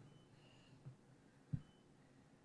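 Near silence: quiet room tone with one short, faint low thump a little after halfway.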